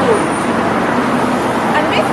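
Steady road traffic noise from a street, loud and even, with a voice speaking faintly under it.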